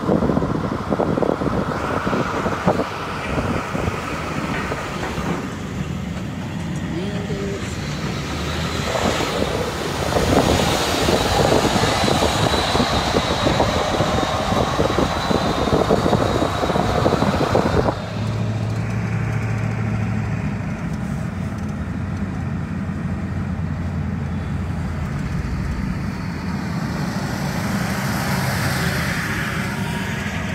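Road and engine noise of a vehicle driving at highway speed, heard from inside the cab. About halfway through, the sound turns into a quieter, steadier low hum.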